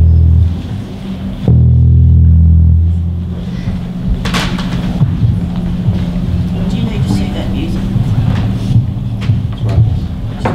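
Electric bass guitar through an amplifier, sounding test notes while the sound is being sorted out: a short low note at the start and a longer one held from about one and a half to three seconds in. After that, a quieter low rumble with scattered small knocks.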